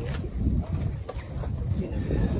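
Wind buffeting the microphone: an uneven low rumble, with a few faint clicks over it.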